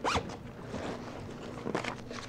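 Zipper on a black leather duffel bag being pulled, with a quick stroke at the start and a shorter one near the end.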